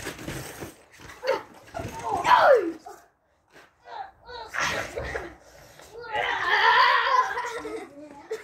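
Boys yelling and laughing without clear words while play-wrestling on a trampoline, with a falling yell about two seconds in. The sound cuts out briefly a little after three seconds.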